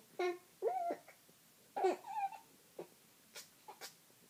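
A two-month-old baby fussing, with three short whiny cries in the first two and a half seconds, then a few faint clicks near the end.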